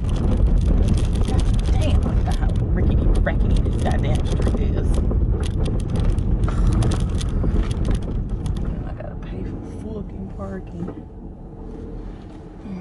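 Car cabin noise while driving: a strong low rumble with scattered knocks and rattles. It eases off after about eight seconds.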